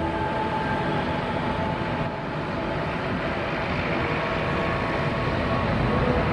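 Boeing 747-400F freighter's four jet engines running as it rolls along the runway: a steady rush of engine noise with faint whining tones, growing slightly louder near the end.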